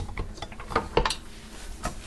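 A beater blade with rubber scraper edges being fitted and locked onto a KitchenAid stand mixer: a string of irregular sharp clicks and clacks of the attachment against the shaft and mixer head.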